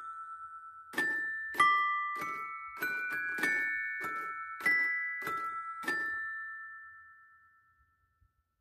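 A 1994 Mr. Christmas Santa's Musical Toy Chest plays a Christmas tune on bright, bell-like chime notes, struck in chords at an even pace with a soft mechanical knock on each strike. The last chord comes about six seconds in and rings out as the tune ends.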